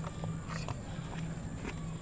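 Faint handling noises: a few soft clicks and rustles as a hand reaches across a tray of potting soil for a monstera cutting, over a steady low hum.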